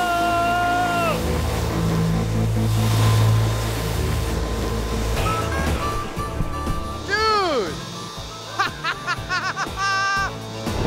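Excited whoops and laughter from the hovercraft rider over background music: a long held shout in the first second, then whoops and laughter near the end. A low rumble fills the first half.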